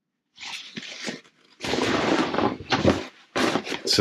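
Heavy marine canvas rustling and scraping as a sail bag is handled and laid down, loudest in the middle, with a few sharp clicks near the end.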